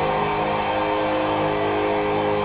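Live hard rock: distorted electric guitars holding one long, sustained chord.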